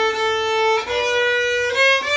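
Viola bowed in long sustained notes, one note held and then changing pitch about a second in and again near the end, three notes in all.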